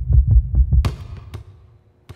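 A basketball dribbled fast on a hardwood floor: deep, even thuds about four a second. They stop a little under a second in, followed by two sharp slaps about half a second apart, and then the sound dies away.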